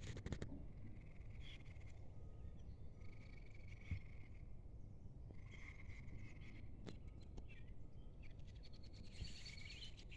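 Faint birds calling and chirping, short scattered notes over a low steady rumble, with a couple of soft knocks about four and seven seconds in.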